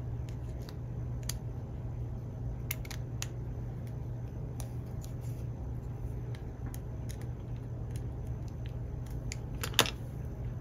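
Scattered small metallic clicks and ticks of a screwdriver and the metal HO scale locomotive kit being handled as the body screws are tightened, with a sharper click near the end, over a steady low hum.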